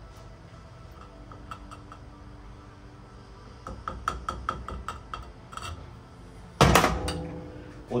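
Light clicks and clinks of the spacer tube being worked up and off the damper rod of a Showa BFF motorcycle fork, with a quick run of ringing taps about halfway through and one loud knock with a short ring about two-thirds of the way in.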